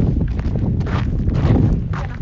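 Footsteps of people walking on a path, a series of short irregular steps over a steady low rumble on the handheld phone's microphone.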